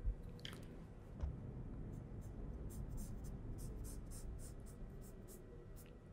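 Faint strokes of a felt-tip marker pen drawing a line across a fabric mock-up on a table, with a soft knock at the start and another about a second in.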